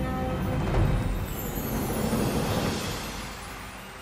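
Whooshing, rumbling sound effect of an animated logo sting, with a faint falling high sweep. It swells about a second in and dies away near the end as the title settles.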